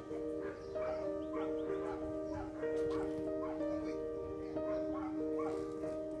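Background music with held chords that change every second or so, and short sliding, yelping calls repeating about twice a second above them.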